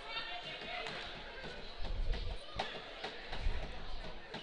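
A basketball bouncing on a gym floor, several separate thuds, with faint voices of players and spectators in the gym behind it.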